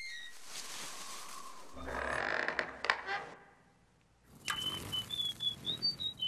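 Film sound-effects sequence: a soft hissing ambience, then a rattle with a few sharp clicks, a second of silence, and a run of high, bird-like creature chirps that glide up and down.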